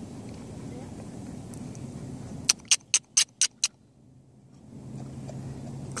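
A low steady rumble, then about halfway through a quick run of six sharp hand claps in about a second, followed by quiet.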